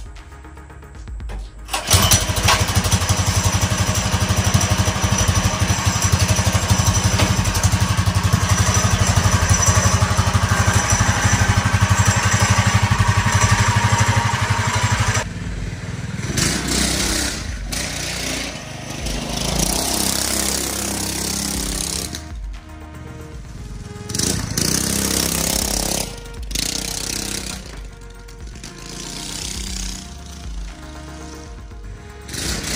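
Predator 212cc single-cylinder engine, running with no exhaust fitted, catches about two seconds in and runs loud and steady. After about fifteen seconds it drops in level and rises and falls as the bike moves about.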